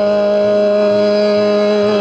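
Hindustani khyal in Raag Ahir Bhairav: one long note held steady over a continuous drone, with no tabla strokes.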